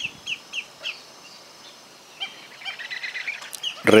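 Black-necked stilts calling: a quick string of short, sharp notes dropping in pitch, about four in the first second, then a denser chatter of calls in the second half.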